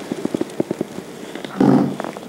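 A quick run of light taps or clicks, about eight in under a second, then a short low hum from a man's voice near the end.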